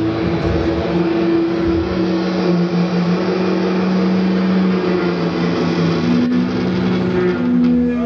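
Live rock band heard from the crowd in a club: loud, distorted electric guitar chords held and ringing, changing chord about two seconds in and again near six seconds.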